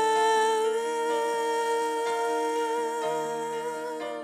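Slow worship music: a woman's voice holds one long hummed or sung note over sustained chords from a Yamaha S90XS keyboard. The chord underneath changes about three seconds in.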